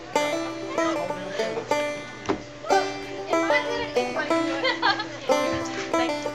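Bluegrass-style music led by a banjo picking quick runs of plucked notes.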